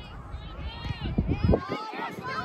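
Several voices calling and shouting over one another during a children's soccer match, some of them high-pitched, from the players and the spectators. Under the voices is a low rumble that drops away about three-quarters of the way through.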